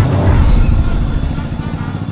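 A loud low rumbling noise with a hiss above it, fading steadily over two seconds.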